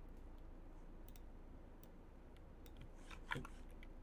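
Faint computer mouse clicks, a few scattered sharp ticks with a louder click about three seconds in, over a low steady hum.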